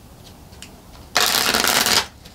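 A deck of astrological cards being shuffled on a tabletop: a few faint card clicks, then a dense, fast rattle of cards starting just over a second in and lasting under a second.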